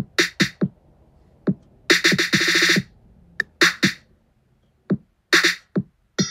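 Programmed trap drum beat from GarageBand's Drummer, kick and snare only, played sparse and soft at a slow tempo. About two seconds in comes a fast snare roll, the loudest part.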